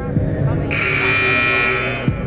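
Basketball scoreboard buzzer sounding once, a steady harsh buzz lasting just over a second that starts under a second in, over voices in the gym.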